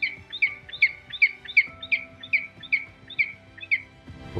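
A bird calling: a run of about a dozen short, sharp notes, each dropping in pitch, three or four a second, over soft background music.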